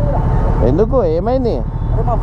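A voice calling out in one drawn-out, wavering tone for about a second, over a steady low rumble of motorcycle engines idling.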